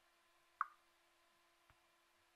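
Near silence with one short pop about half a second in and a much fainter tick near the end.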